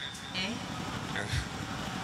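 A lull between spoken lines: a faint voice and a low steady background rumble, with a soft low thud about one and a half seconds in.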